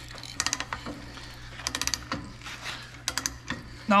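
Manual ratcheting pipe threader cutting a thread on steel pipe. Its pawl clicks in three short runs of quick clicks, about a second apart, as the handle is swung back between cutting strokes.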